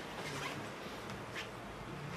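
Quiet room tone between spoken phrases: a steady low hum under a faint hiss, with one faint tick about one and a half seconds in.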